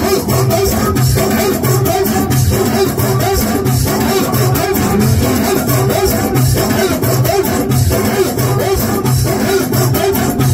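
Amplified live Moroccan chaabi music with a steady, pulsing bass beat under a wavering melodic line.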